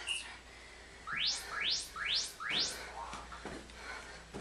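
Electronic interval timer signal: a short beep, then four rapid rising chirps in quick succession, marking the start of the next Tabata work interval. A few light thuds of feet landing follow near the end.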